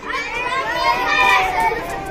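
A group of young children answering a question together, many voices overlapping in a ragged chorus.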